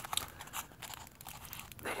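A small cardboard box being handled and its packing worked out of it by hand, giving a run of irregular crackling clicks.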